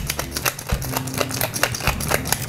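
Hand-twisted pepper mill grinding peppercorns: a fast run of dry crunching clicks, over soft background music.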